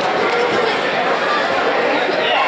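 Indistinct chatter of several overlapping voices in a large gymnasium, steady throughout, with no single voice standing out.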